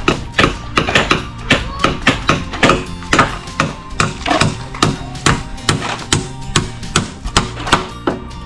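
Hammer blows, sharp and fairly even, about two to three a second, as a wooden fence post is worked in, over background music.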